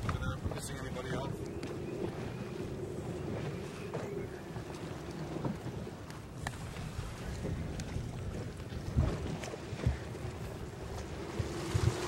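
Wind buffeting the microphone and water washing along the hull of a rigid inflatable boat under way on choppy sea, over a steady engine hum, with a few low thumps near the end.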